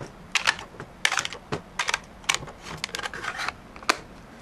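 Irregular plastic clicks and taps as AA batteries are pressed into the spring contacts of an RC transmitter's battery holder and the plastic battery cover is fitted, with a sharp click just before the end.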